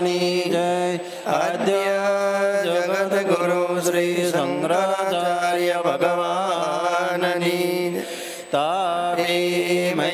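A man's voice chanting a devotional invocation in long melodic phrases over a steady low drone, pausing briefly for breath about a second in and again near the end.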